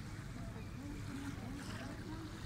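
Faint, indistinct voices talking in the distance over a steady low rumble of wind and small waves at the shore.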